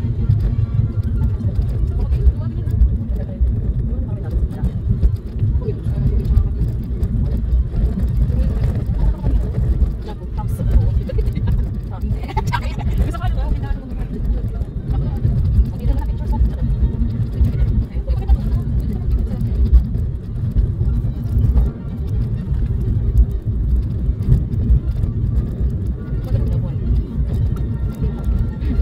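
Road and engine rumble inside a moving car: a steady, uneven low drone from tyres and engine on a rough rural road.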